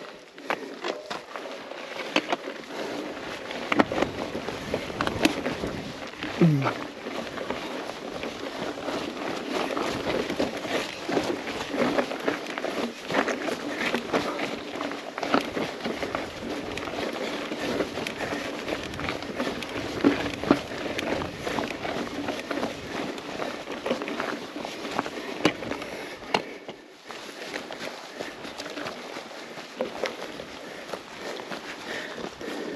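Mountain bike ridden slowly up a rocky dirt trail: tyres crunching over gravel and stones and the bike rattling in a continuous run of small clicks and knocks, with the rider breathing hard on the climb.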